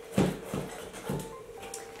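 Kitchen knife chopping a bell pepper on a cutting board: a few sharp knocks, the first the loudest.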